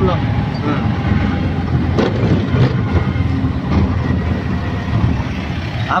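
Auto-rickshaw's small engine running under way, a steady low rumble with road noise, heard from inside the open cabin. A brief knock about two seconds in.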